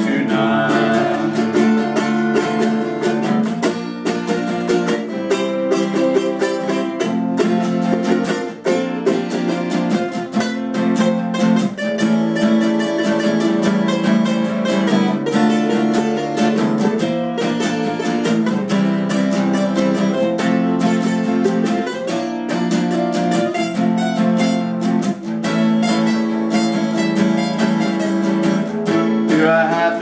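Acoustic guitar and ukulele strumming chords together, a steady rhythmic accompaniment with no sung words: an instrumental break between verses of the song.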